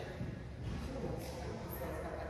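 Faint groaning and murmuring voices in a large room, from people working on foam rollers, with a few light shuffling rustles.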